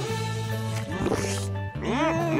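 Cartoon background music playing steadily. Just after the middle comes a short rising sound effect with a hiss, and near the end a voice-like call that swoops up and down in pitch.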